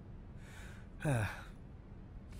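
A man's sigh: a breath drawn in, then a short voiced exhale that falls in pitch just after a second in.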